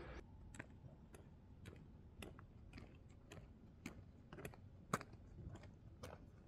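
Faint, evenly spaced clicks about twice a second at walking pace, from a walker moving along a paved road, over near silence.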